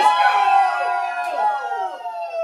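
A small group of people cheering and yelling in excitement, several long high-pitched cries overlapping and slowly falling in pitch.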